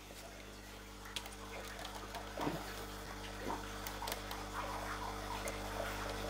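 A faint steady low hum that sets in about half a second in, with scattered soft clicks and ticks over it.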